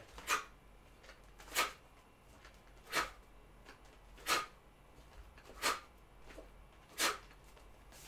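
A man's sharp exhalations with each shadowboxing punch: six short hissing breaths, evenly spaced about a second and a bit apart.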